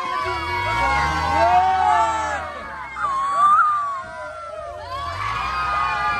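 A crowd of many voices shouting and screaming over one another, with a loud high-pitched shout about three seconds in. Under it a low hum rises in pitch about half a second in and again near the end.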